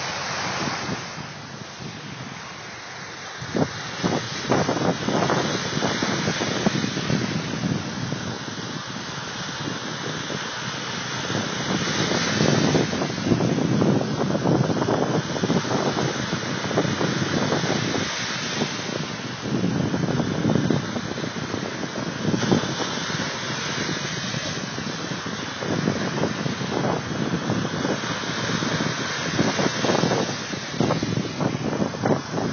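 Waves washing onto a beach, surging louder every several seconds, with wind buffeting the microphone.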